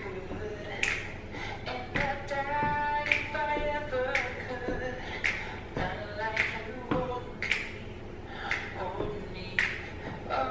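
A girl singing a cappella, keeping time with finger snaps about once a second.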